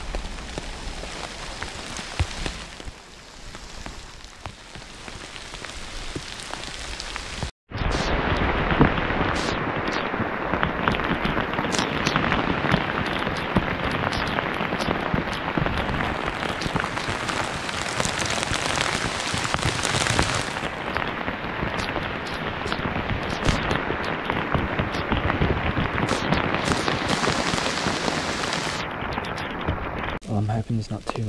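Pouring rain falling on the bush, with single drops striking close to the camera. The rain is moderate for the first seven seconds or so, then after a brief dropout it is much louder and steady to the end.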